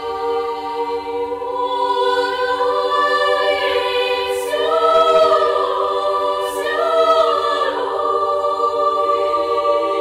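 Children's choir of girls' voices singing a cappella: a sustained chord held in several parts, with the upper voices swelling twice to louder peaks around the middle, then settling back to the held chord.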